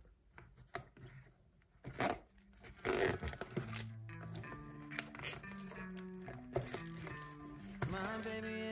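Hands handling a small cardboard box, with short taps, scrapes and packaging rustle as its flaps are opened. About two and a half seconds in, background music with a steady bass line starts and carries on over the handling.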